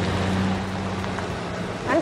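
Car engines running: a steady low hum over road noise that cuts in abruptly and eases slightly.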